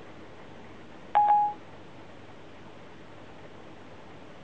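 iPhone 4S Siri chime: one short electronic beep about a second in, the tone Siri gives when it stops listening to a spoken request and begins processing it.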